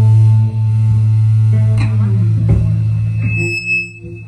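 Live electric guitar and bass guitar playing through amplifiers, a loud low bass note held under sustained guitar tones, with a few short hits in the middle; the sound drops away sharply near the end.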